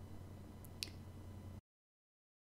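One sharp click a little under a second in, over a faint low hum; the sound then cuts off abruptly to dead silence.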